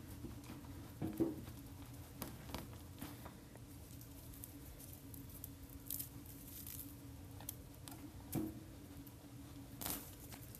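Small hand shovel digging and scraping in potting soil in a plastic planter: faint scattered scrapes and crunches of soil, a dozen or so over the stretch, with a slightly louder scrape about a second in and another near the end. A faint steady hum runs underneath.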